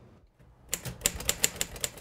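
Manual typewriter being typed on: a fast, even run of key strikes that starts a little under a second in.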